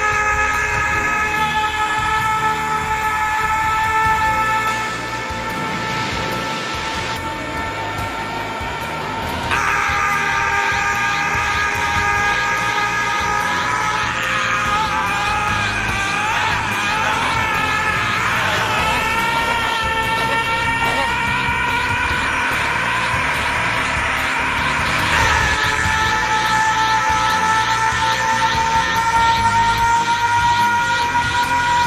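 An anime hero's long powering-up scream, held at a high steady pitch. It wavers and strains through the middle and climbs slightly near the end.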